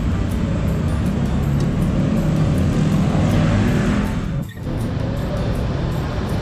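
Steady low rumble of road traffic, swelling as a vehicle passes about three to four seconds in, with a brief sudden drop about four and a half seconds in.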